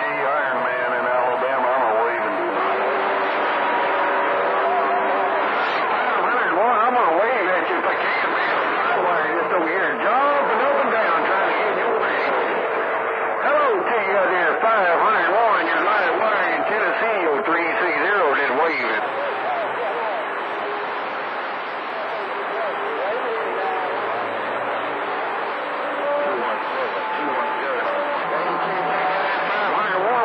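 CB radio receiving skip on channel 28: several distant stations' voices come through the receiver's speaker at once, overlapping and hard to make out, with steady whistling tones running under them.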